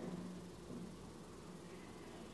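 Faint room tone with a low, steady hum.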